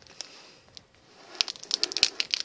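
Gobstopper candy packaging crinkling and clicking in the hands as it is worked at to get it open: quiet at first, then a quick run of sharp crinkles in the second half.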